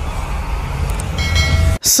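Channel logo intro sound effect: a steady deep rumble, joined about a second in by a high ringing tone, and ending in a sharp hiss just before the voice starts.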